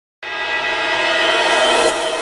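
Cinematic title-intro sound effect: a sustained, horn-like chord of many steady tones that starts about a quarter second in and swells slowly louder.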